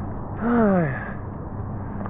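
A man's voiced sigh: one falling 'ahh' about half a second in, lasting about half a second.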